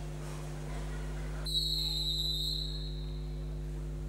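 Referee's whistle blown once in a long steady high blast, starting about a second and a half in and lasting about a second: the signal for the swimmers to step up onto the starting blocks. A steady low hum runs underneath.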